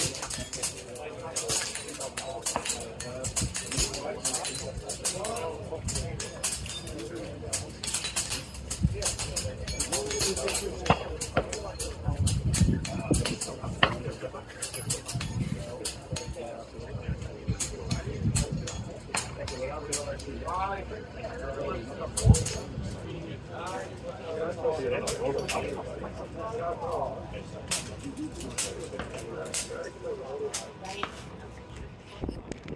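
Scattered sharp reports of scoped air rifles firing at steel silhouette targets, the loudest about 22 seconds in, over the murmur of voices.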